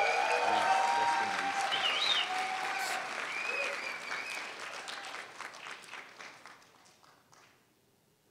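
Audience applauding, with a few voices cheering over the clapping early on. The applause dies away over the last few seconds.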